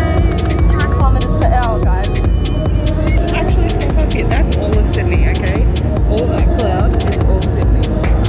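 Steady low drone of an airliner's jet engines heard from inside the passenger cabin in flight, with indistinct voices over it.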